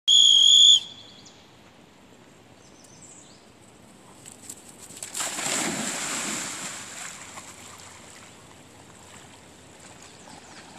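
A dog-training whistle blown once, a single steady high blast of under a second: the recall signal. About five seconds in comes a two-second rush of splashing water.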